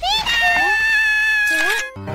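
A cartoon child's high voice wailing a long, drawn-out cry of dismay ("No!"), held on one high note for over a second and breaking off near the end.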